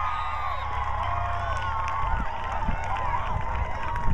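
Cheering right after a field hockey goal: several high-pitched voices shout and shriek together, with some long shouts held through the celebration.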